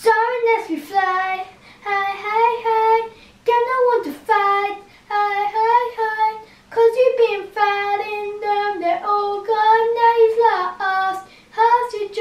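A young child singing his own made-up song unaccompanied, a simple tune in short phrases with brief pauses between them.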